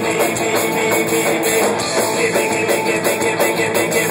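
Live rock band playing loudly, with electric guitar and drum kit in a dense, steady mix, recorded on a phone in the room.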